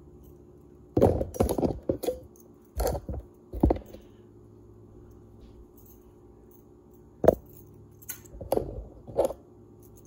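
Cotton muslin being handled and rubbed close to the microphone in short, irregular rustles and scrapes, with a single sharp click about seven seconds in, over a steady low hum.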